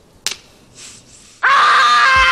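A young boy's sharp slap of both hands onto his cheeks about a quarter second in, then a loud, long, high-pitched scream starting about a second and a half in: the aftershave-sting scream from Home Alone.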